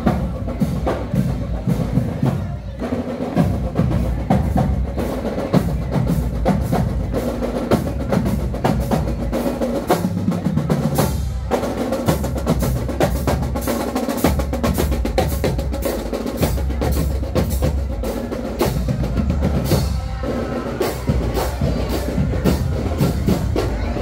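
A marching band's percussion section playing a steady, driving beat on drums and congas, with dense, rapid strikes all through.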